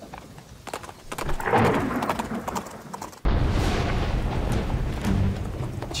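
Film sound of riders setting off in heavy rain: rain and horses' hooves, then a sudden loud crack of thunder about three seconds in that rolls on as a low rumble, with music underneath.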